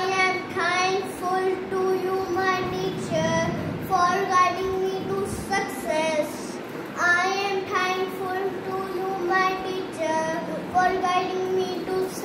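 A young boy singing a song solo in English, with sustained notes in short phrases separated by brief pauses for breath.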